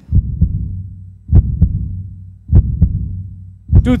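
Heartbeat sound effect: low double thumps, one pair about every 1.2 seconds, over a steady low hum.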